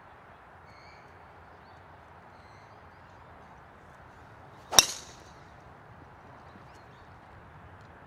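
Golf driver striking a teed ball on a hard full swing: one sharp, loud crack with a brief ringing tail, about five seconds in, over faint steady background noise.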